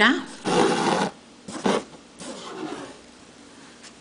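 Embroidery thread, doubled, being drawn through cloth stretched in an embroidery hoop: a rasping swish of the thread pulled through the fabric about half a second in, a short one a little later and a fainter one near the middle.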